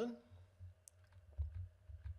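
A few faint, scattered clicks of computer keys being pressed while text is edited.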